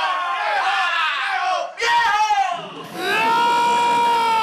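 High-pitched wordless vocal cries, drawn out and gliding up and down in pitch, with a dip in the middle and a long steady held note in the last second.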